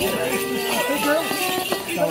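A Morris dance tune played on a clarinet, with people's voices talking over it.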